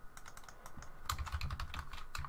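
Computer keyboard typing: a quick run of keystrokes, fairly quiet, typing out a word.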